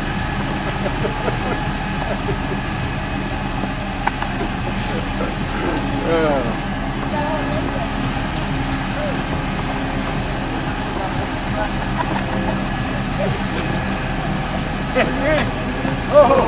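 A limousine's engine idling steadily, with people talking and laughing indistinctly in snatches, most clearly about six seconds in and near the end.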